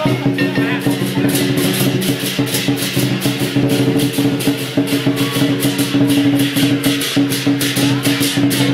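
Chinese lion dance percussion: a big drum, clashing cymbals and a gong beating out a fast, steady rhythm of about four crashes a second, with the gong and drum ringing underneath.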